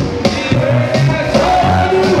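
Loud live band music: an electric bass guitar line moving under steady drum hits and a held, wavering melody.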